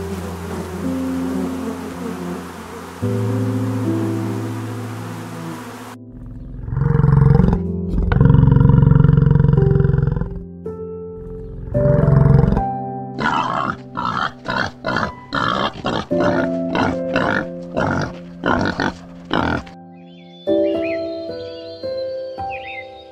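American bison bellowing: loud, low, rough grunting bellows in long bursts over soft piano music, followed by a run of shorter, sharper grunts about one to two a second. A steady hiss comes before the bellows.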